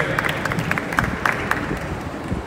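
Audience applause: many separate hand claps over a crowd haze.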